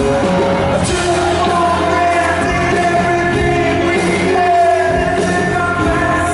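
Live pop band performing: a male lead vocal sung into a microphone over electric guitar and drums, loud and continuous.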